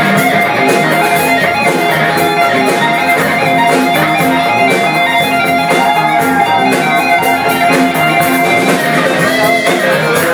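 Live band playing a funk groove, with guitar prominent over bass and a drum kit keeping a steady beat.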